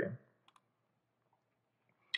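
A man's voice trailing off at the start, then near silence with one faint click about half a second in.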